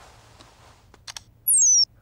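Smartphone message notification: a quick run of high electronic tones stepping downward in pitch, about a third of a second long, near the end. A couple of light clicks come just before it.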